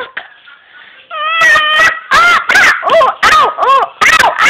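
A high-pitched voice making a quick run of loud rising-and-falling squeals, starting about a second in.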